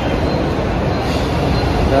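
Electric suburban local train running alongside a station platform: a steady rumble of wheels and coaches.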